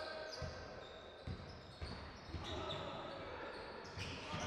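Faint sound of a basketball being dribbled on a hardwood court, a few soft thuds in the first two seconds over low hall background noise.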